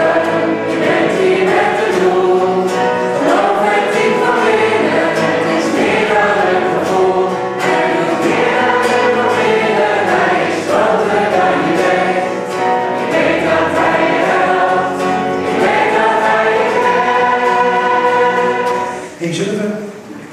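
Live Christian worship song: a woman singing lead with acoustic guitar, several voices singing along together. The song drops away near the end.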